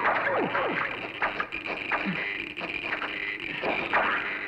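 Cartoon sound effects of shots striking and ricocheting off a metal control panel. Ricochet whines fall in pitch near the start, then a scattering of sharp hits follows at irregular gaps.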